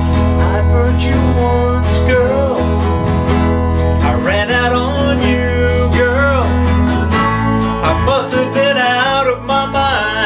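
A 1960s pop song played live on an electronic keyboard and a strummed acoustic guitar, with a man singing over them. The keyboard holds steady chords and low bass notes.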